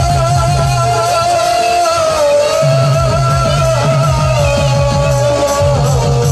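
A woman singing a long held, wavering line of a Sambalpuri folk song over a live band, with fast, dense drumming and a low bass note underneath.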